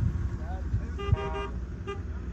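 A vehicle horn tooting: a quick run of three short blasts about a second in, and one more near the end. Wind rumbles on the microphone underneath.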